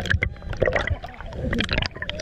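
Water sloshing and gurgling against a camera held half-submerged at the waterline, with many short clicks and crackles as the water moves over the microphone.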